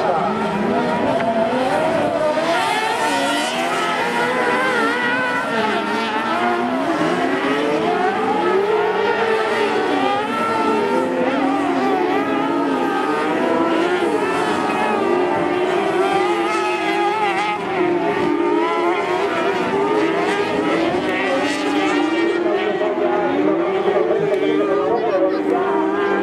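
Several carcross buggies' high-revving motorcycle engines racing at once on a dirt track, their overlapping notes rising and falling steadily as the drivers go on and off the throttle through the corners.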